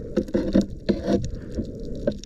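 Muffled underwater sound of a diver swimming at the surface, with an irregular patter of short knocks as water and gear strike the camera housing.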